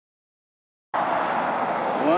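Silence for about the first second, then wind noise on the microphone cuts in suddenly and runs steadily.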